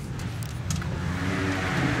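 An engine running some way off, slowly getting louder, its faint hum rising and falling in pitch over a steady rushing noise.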